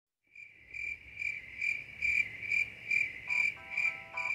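Insect chirping: one high tone pulsing evenly about twice a second. A few soft musical tones come in near the end.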